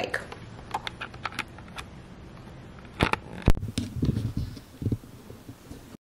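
Handling noise of a Canon M50 camera body, heard through its own built-in mic, while an external mic's cord is plugged into its mic jack: a few light clicks, then two sharp clicks about three seconds in, followed by low rubbing and bumps.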